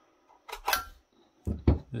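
Thin sheet-metal top cover of a small Ethernet hub being pulled off its chassis, with a short metallic scrape and clatter about half a second in, then two or three knocks a second later as the parts are handled.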